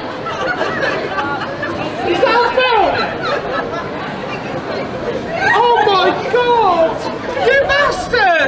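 Voices: a man exclaiming and talking in two louder spells, about two seconds in and again about five and a half seconds in, over background chatter.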